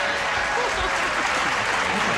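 Studio audience applauding steadily, with faint voices underneath.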